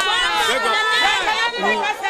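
Several people talking and calling out over one another in raised voices.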